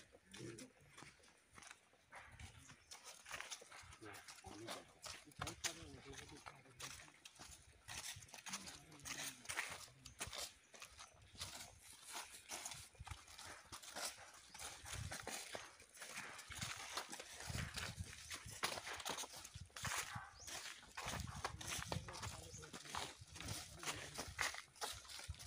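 Footsteps of several people walking through dry fallen leaves, an irregular run of crunches and rustles, with faint indistinct voices.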